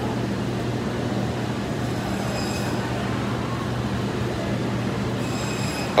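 Steady hum and background noise of a large grocery store at the refrigerated meat cases, with a faint high-pitched squeal coming in twice, about two seconds in and again near the end.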